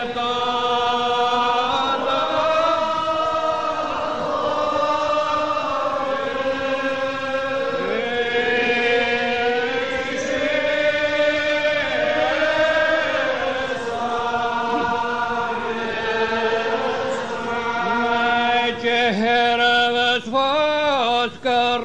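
Unaccompanied Gaelic psalm singing by a church congregation, on a cassette recording: slow, long-drawn notes from many voices that waver and slide from pitch to pitch. Near the end the pitch moves more quickly, with short rises and falls.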